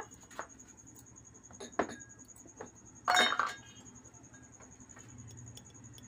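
A few light clicks, then a louder short clink with a brief ring about three seconds in: a spoon knocking against a container as ground spice is added to a bowl of marinade.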